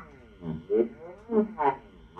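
Moog Moogerfooger analog effects units producing electronic tones whose pitch keeps sweeping down and back up, in uneven pulses a few times a second.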